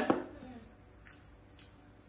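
Crickets chirping in a steady, high, continuous trill, with a short click near the start.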